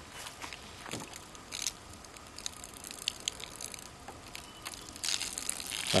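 Water trickling and dripping out of a bullet hole in a plastic gallon water jug, with light ticks from the plastic jug being handled; the trickle grows louder near the end.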